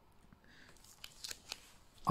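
Near silence with a few faint, small clicks about a second in.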